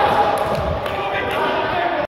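Indistinct voices of players and their footsteps on the court floor, echoing in a large sports hall, with a few faint knocks.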